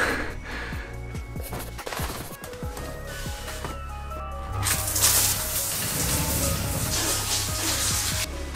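Background music with a plucked melodic line throughout. A bit past halfway a loud, steady hiss of shower water comes in over the music and cuts off suddenly at the end.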